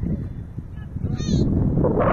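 A single short honking call about a second in, over a steady low rumble.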